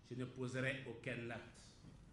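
Speech only: a man talking, fairly quietly, for about a second and a half, then a short pause.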